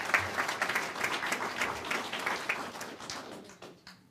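Audience applauding in a meeting room: a dense patter of many hands clapping that thins out and dies away near the end.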